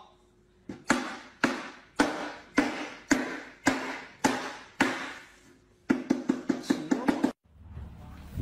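A cleaver chopping down on a wooden board, about nine evenly spaced chops a little under two a second, then a quick flurry of lighter chops near the end.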